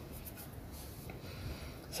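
Faint scratchy rustling over low background hiss, in a couple of short spells.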